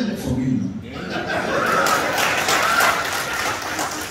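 Audience laughing, with some scattered clapping, swelling about a second in after a man's brief words and easing off near the end.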